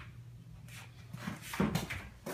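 A spotted hyena cub inside a clothes dryer's drum making a few short sounds, starting about a second in, the loudest shortly before the end.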